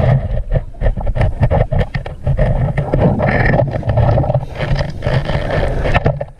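Underwater noise of a scuba dive heard through a camera housing: dense crackling bubbles over a low rumble, loud throughout.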